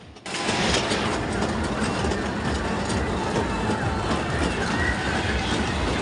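A fairground ride running at speed: a loud, steady rattling rumble that starts suddenly just after the start.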